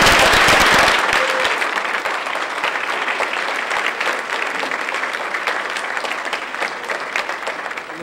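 Indoor crowd applauding, loudest in the first second and then slowly easing off.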